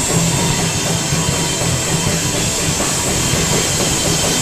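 Live rock band playing an instrumental passage: electric guitars, bass guitar and drums together as a loud, dense, continuous wall of sound with no vocals.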